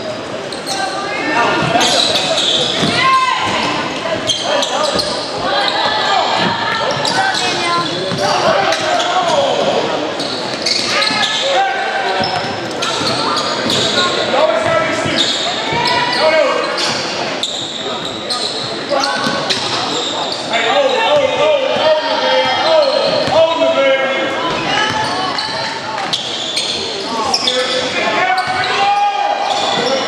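A basketball bouncing on a hardwood gym floor amid overlapping voices of players and spectators calling out, all echoing in a large gymnasium.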